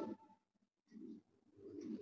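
Faint, low bird cooing about a second in, in an otherwise quiet room. The tail of a louder sound cuts off right at the start.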